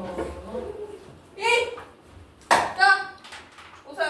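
Two short high-pitched voice sounds, with a single sharp tap between them.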